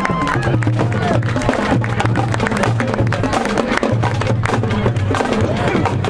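Marching band drumline playing a cadence: dense, sharp snare strokes over a repeating pattern of low bass-drum notes.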